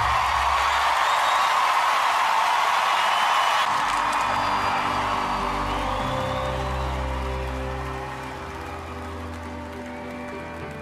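Studio audience applauding and cheering, fading out after about four seconds. A soft instrumental song intro of held chords over a low bass note then comes in and grows quieter.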